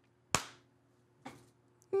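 One sharp click about a third of a second in, with a short decaying tail, then a fainter brief rustle of noise just past a second.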